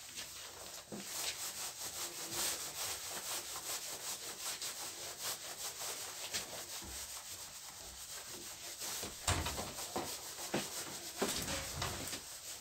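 Handheld whiteboard duster wiping marker writing off a whiteboard in quick back-and-forth rubbing strokes, with a few heavier strokes near the end.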